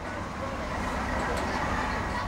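Street ambience: a steady low rumble of road traffic with faint voices in the background.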